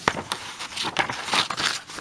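Paper pages of a hardback book being turned and smoothed by hand: a series of quick rustles, with a sharp click right at the start.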